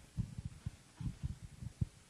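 A run of soft, muffled low thumps at an irregular pace, about a dozen in two seconds.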